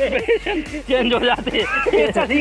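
Voices over background music.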